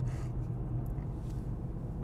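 Steady low engine drone with road noise inside the cabin of a Mercedes-AMG CLA45 S cruising gently. Its turbocharged four-cylinder note is amplified in the cabin by a sound module.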